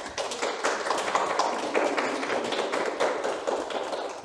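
Audience applauding: many hand claps close together at a steady level.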